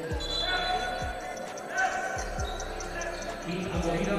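A basketball being dribbled on a hardwood court: a few bounces, roughly a second apart, with a little echo in a large hall.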